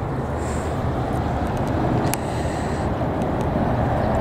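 Steady low rumble of road traffic from a nearby elevated highway bridge, with a single faint click about two seconds in.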